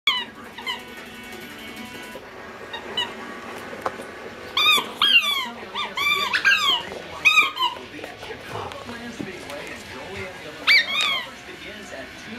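A yellow Labrador retriever whining in short, high whimpers that rise and fall in pitch. There are a couple near the start, a run of several in the middle, and two more near the end.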